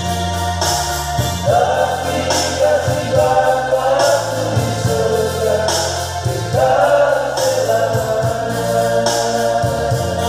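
Men's vocal group singing a gospel hymn together, over held low keyboard notes, with a light high percussive shimmer recurring every second or so.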